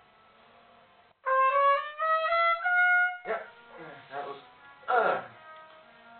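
Trumpet playing a short phrase of about four notes stepping upward, starting about a second in and lasting about two seconds. A few shorter, rougher sounds follow, the one near the end as loud as the trumpet.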